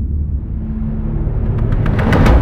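Deep, steady low rumble of film-trailer sound design under the title cards, with a faint held tone joining it and a rising swell that grows louder and brighter toward the end.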